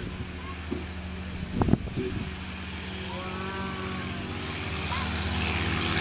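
Two Van's RV-7 light aircraft on a formation take-off, their piston engines and propellers at full power, steadily growing louder as they come closer. A brief loud bump sounds a little under two seconds in.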